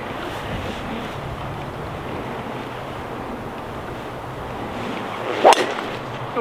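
A golf driver striking a teed-up ball: one sharp crack near the end, over steady wind noise.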